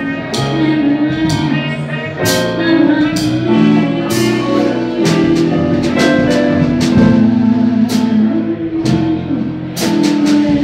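Live small jazz band playing: electric guitar and keyboard over a drum kit, with cymbal strokes through the passage.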